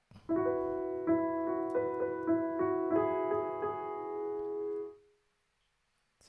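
XLN Audio Addictive Keys Studio Grand virtual piano on its "Mr Bright" preset, playing a short phrase of sustained notes and chords for about five seconds before stopping.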